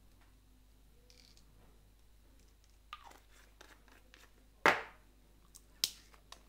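Small paint and ink bottles being handled on a wooden worktable: three sharp knocks and clicks, the loudest about halfway through, with faint rustling between them.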